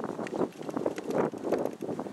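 Wind buffeting the microphone while .410 shotshells are pushed into a Mossberg Shockwave's tube magazine, with a few light clicks.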